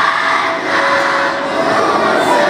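A large children's choir singing, its held notes over the busy noise of an audience.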